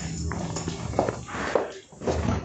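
Footsteps on a hard floor and body-camera rubbing and jostling as the wearer walks, a few short knocks about half a second apart. A steady low hum fades out in the first half second.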